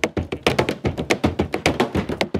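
Hand drumming on kayak hulls in a quick, busy rhythm of sharp strikes. The beats are looped and layered over one another, so it sounds like more than one drummer.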